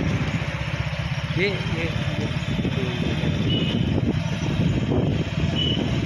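A vehicle engine running steadily while on the move along a road, with a rapid, even low pulsing.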